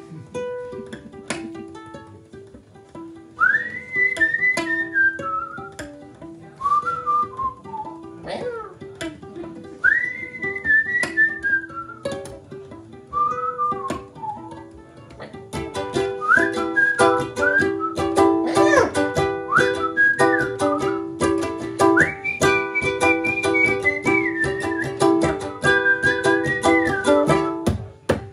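Ukulele played with a whistled melody over it: short whistled phrases that slide up and fall away over sparse plucked chords, then from about halfway the ukulele plays busier and louder under a higher, longer-held whistled tune.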